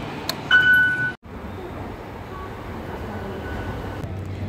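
MRT fare-gate card reader giving one short, high beep as a stored-value transit card is tapped on it, just after a light click of the card. After a sudden cut, steady low background rumble.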